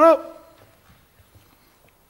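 A man's short, loud vocal exclamation right at the start, then quiet with a few faint ticks.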